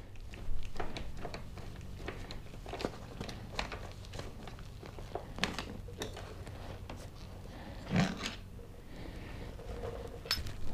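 Small handling noises as a motorcycle seat grab handle is unbolted with an Allen key and worked loose by hand: scattered faint clicks and rustles, with a louder knock about eight seconds in, over a steady low hum.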